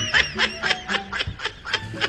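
A person's laughter: a quick run of short, high-pitched laughs, several a second, thinning out after about a second.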